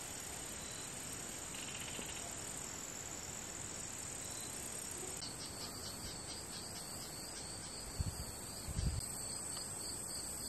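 Insects, crickets among them, trilling steadily in a high continuous tone, with a second insect's rapid pulsing chirps joining about halfway through. Two brief low thumps near the end.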